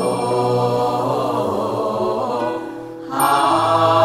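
Background music of a sung Buddhist mantra chant, with several voices holding long notes over a sustained accompaniment. It fades briefly near three seconds in, then picks up again.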